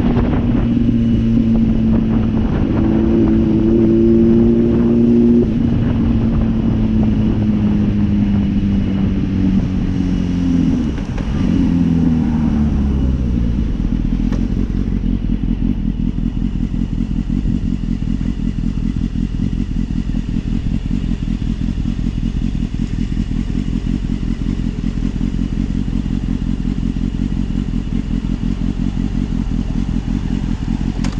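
Motorcycle engine running as the bike rides, its pitch falling over several seconds as it slows to a stop. It then idles steadily with a low, even pulse for the second half, heard from a helmet-mounted camera.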